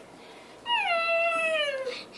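A puppy whining: one drawn-out whine of a bit over a second that slides down in pitch.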